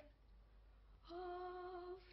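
A woman humming one long, steady note that begins about a second in.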